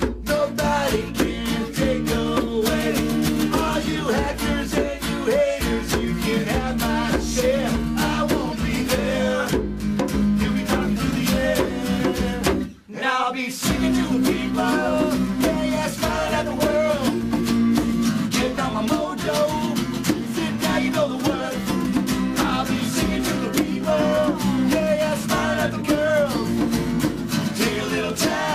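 Live acoustic rock song: an acoustic guitar strummed steadily under a man's lead singing. The sound drops out for a moment about halfway through.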